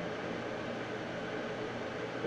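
Steady, even background hiss: room tone.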